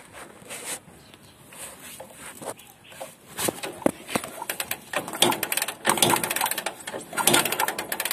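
Bajaj CT100's single-cylinder engine being kicked over with its spark plug out and held against the engine, a check for spark. Scattered clicks at first; from about three seconds in, repeated bursts of rapid clicking and mechanical rattle.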